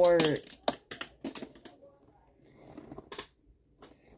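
Plastic Lego pieces clicking and rattling as a handheld Lego web shooter is handled: a quick run of sharp clicks about a second in, and another couple of clicks near three seconds.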